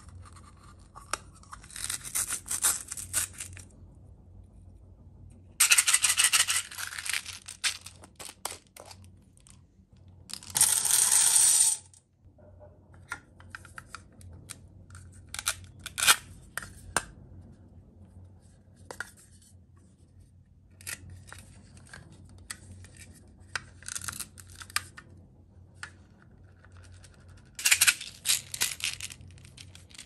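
Hands handling hollow plastic toys: scattered plastic clicks, taps and scrapes. Several louder stretches of rattling and rustling come in between, the most even one lasting a second or two about ten seconds in.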